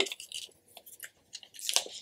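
Thin plastic protective film on a new iPhone being handled and starting to peel off. A few faint ticks come first, then a crinkling sound rises over the last half second.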